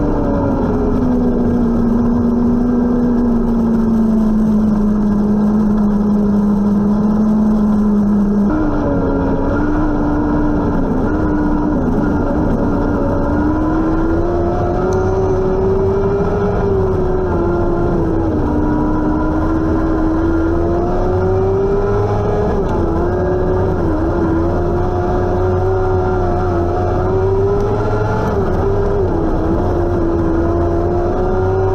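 Restrictor-class winged micro sprint car's engine heard from inside the car while racing on a dirt track. The engine holds a steady, lower note for about the first eight seconds, then jumps abruptly higher and rises and falls over and over as the car goes through the corners and down the straights.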